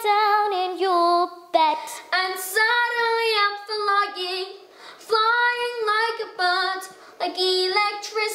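A young solo voice singing unaccompanied: short phrases of held notes with a slight waver, broken by brief pauses.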